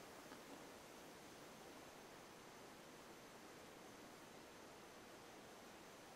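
Near silence: only a faint, steady hiss of room tone.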